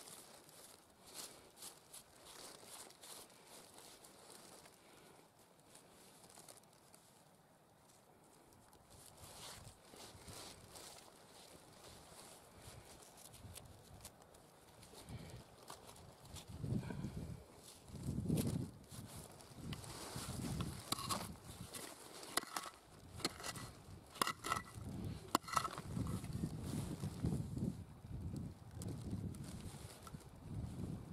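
Fingers scraping and raking through loose, coarse pegmatite gravel, with small stones crunching and clicking against each other. Quiet at first, it gets busier about halfway through, with a run of sharp stone clicks and low rumbles from the hand working the grit.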